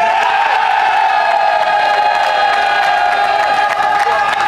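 A group of baseball players cheering in the dugout: a long, held shout from many voices, slowly falling in pitch, with scattered claps that grow more frequent near the end.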